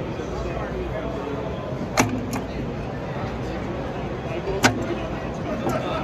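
Two sharp metallic clicks about two and a half seconds apart, with a fainter one near the end: a control handle on an EMD (General Motors Electro-Motive Division) diesel locomotive control stand clicking through the notches of its quadrant. Steady hall noise underneath.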